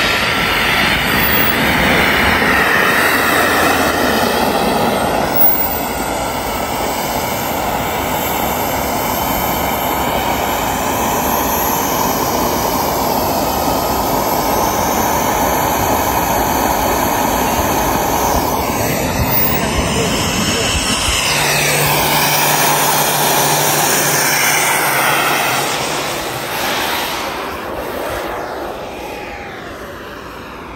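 A Freewing Yak-130 RC jet model's engine running at high power through its takeoff roll: a loud, rushing blast with a high whine. The whine's pitch bends down about twenty seconds in as the jet passes, and the sound fades near the end as it climbs away.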